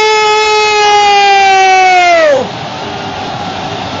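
TV football commentator's long, held goal shout: one sustained note for about two and a half seconds that falls away at the end, over a stadium crowd cheering. The crowd carries on alone after the shout.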